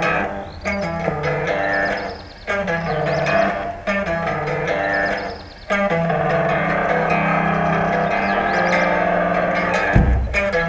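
Instrumental rock music: a guitar and bass riff played in short phrases with brief pauses between them, giving way to fuller, continuous playing from about halfway.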